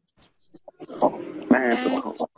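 A brief pause with a few faint clicks, then from about a second in a person's drawn-out voiced sound, a held vowel at a steady pitch, coming through a video call.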